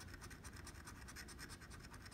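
A coin scraping the latex coating off a scratch-off lottery ticket in quick, even back-and-forth strokes, faint.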